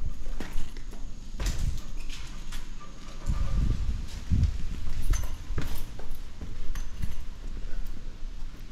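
Footsteps on concrete stairs and then a gritty concrete floor: irregular hard steps, with a few heavier low thumps in the middle.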